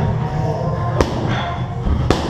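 A boxing glove punch landing on a focus mitt: one sharp smack about a second in, over a steady low background.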